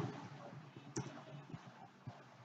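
A few faint, separate clicks from operating a computer while a selected block of code is deleted. The sharpest click comes about a second in.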